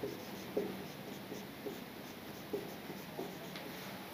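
Marker pen on a whiteboard as block capital letters are written: several short separate strokes with pauses between them.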